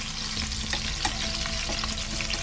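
Chicken wing pieces sizzling and crackling in hot oil in a frying pan as they are turned over, with one sharper crackle about a second in.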